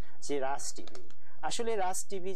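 A man speaking Bengali in two short phrases with a brief pause between them; speech only.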